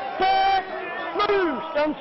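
Loud shouted calls from people: a short held shout early on and a shout falling in pitch past the middle, over background chatter.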